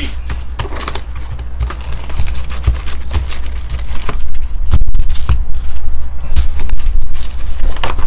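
Cardboard hobby box of trading cards being opened and its foil-wrapped packs pulled out by hand: rustling, crinkling and scraping with many small clicks, getting louder about halfway through.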